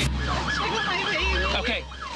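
Emergency-vehicle siren in a fast yelp, its pitch sweeping up and down about four times a second, over a low engine-like hum.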